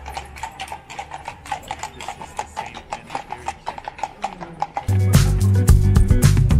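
Hooves of a pair of carriage horses clip-clopping on stone paving, a quick, uneven run of hoof strikes. About five seconds in, loud background music with a plucked guitar starts and covers them.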